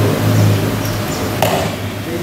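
A single sharp knock about one and a half seconds in, over a steady low hum.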